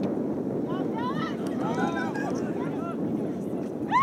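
Wind rushing on the microphone, with faint distant shouts from players on the soccer pitch about a second in and again around two seconds.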